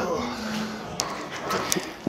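A lifter's drawn-out strained groan during a cable lat-pulldown set, one steady held tone that fades within the first second, followed by a few sharp clicks.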